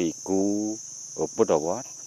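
A man speaking, over a steady high-pitched drone of insects chirring that does not change.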